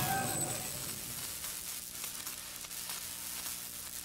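A steady hiss, like static, with a faint low hum beneath it, easing off slightly over the few seconds.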